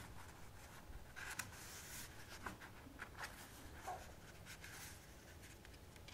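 Faint, scattered rustling and scraping of large paper sheets being handled in a stack.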